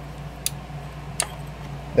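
Two sharp light clicks about three-quarters of a second apart, over a steady low hum.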